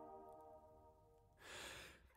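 The last held chord of a multitracked a cappella barbershop quartet dies away over the first half second. After a pause, a singer takes one short, audible breath in about one and a half seconds in, just before the next entry.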